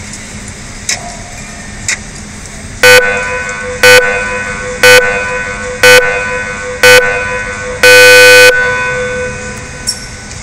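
Electronic start clock counting down through its horn loudspeaker: faint ticks each second, then five short loud beeps one second apart and a longer final beep at zero, the start signal.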